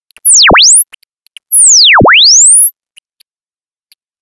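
A loud electronic pure tone sweeping in pitch: it rises from very low to very high, falls back to the bottom about two seconds in, then rises again to the top, each sweep slower than the last. It cuts off about three seconds in.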